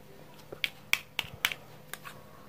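Hard plastic toy fruit pieces clicking and tapping against each other as they are handled: a series of about six sharp, short clicks.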